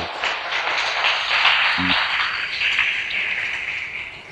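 Audience applauding, a dense clatter of clapping that thins out near the end.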